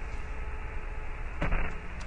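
Static-like white-noise hiss from the Mars rover Opportunity's accelerometer data turned into sound, with one sharp click about one and a half seconds in.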